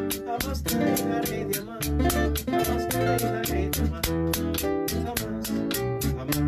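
Live son band playing an instrumental passage: two nylon-string acoustic guitars picking melodic lines over low bass notes. A steady percussion tick runs underneath at about four to five strokes a second.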